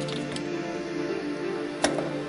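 Background music with steady tones. Near the end comes a single sharp click: a knife knocking into the basket of a stainless-steel knife sterilizer as it is dropped in.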